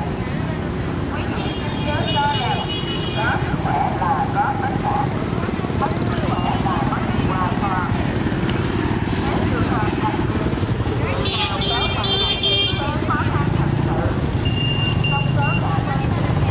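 Motorbike traffic running past at close range, with people talking in the background.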